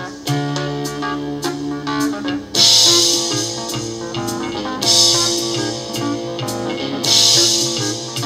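A 1970s Swiss symphonic prog rock band playing a new break section: sustained keyboard and bass notes under three big accented strums, one sounding off each bar about every two seconds from a few seconds in.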